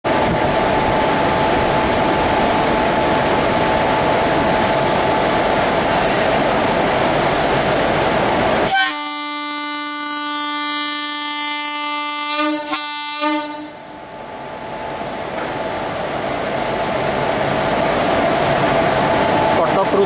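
Indian Railways electric locomotive running in along a station platform with a steady rumble, sounding one long horn blast of about four seconds about nine seconds in, broken briefly just before it stops; the rumble then builds again as the train comes closer.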